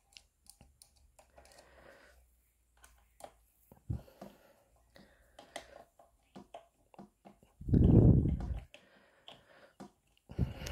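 Faint irregular clicks and creaks of a small screw being turned into a plastic toy part with a screwdriver, with one loud low thump of about a second near the end.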